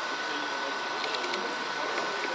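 Small electric motor of an H0 model train running with a thin steady whine, its wheels rolling on the track with a few light clicks about halfway through.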